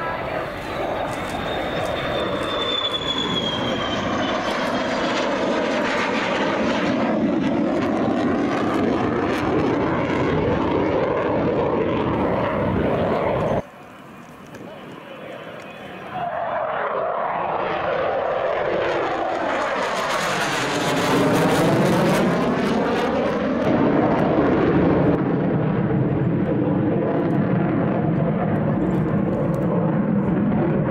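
F-16 fighter jet engine at high power on display passes, a loud continuous jet sound whose tone sweeps and wavers as the aircraft goes by. About 13 seconds in it cuts suddenly to a quieter stretch, then builds up loud again as the jet pulls up.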